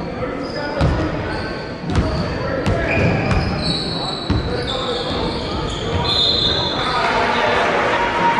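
A basketball bouncing on a hardwood gym floor, several separate thumps in the first half, ringing in a large echoing hall with voices chattering throughout.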